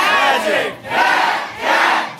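A crowd shouting single words in unison on cue, as a call-and-response chant. One shout dies away about half a second in, and a second loud shout follows about a second in.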